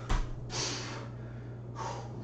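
A man breathing hard during exercise reps: a short thump at the start, a forceful hissing exhale about half a second in, and a sharp inhale near the end.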